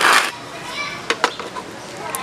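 Children's voices and chatter in the background, opening with a short loud rush of noise, with two sharp clicks a little past a second in.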